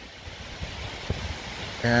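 Faint scraping and a few light clicks of a tool chiselling dried mud off a mud dauber wasp tube, over a steady hiss.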